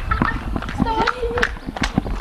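Quick footsteps of people running in sandals on brick paving, about four or five steps a second, with a woman shouting "Stop. Stop."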